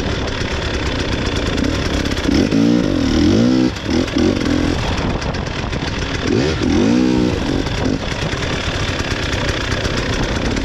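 300 cc fuel-injected two-stroke enduro motorcycle engine running under way, revving up and down quickly in two bursts, about a third and two-thirds of the way through.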